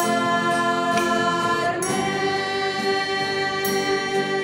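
A small group of voices singing a worship song in long, held notes, accompanied by acoustic guitar.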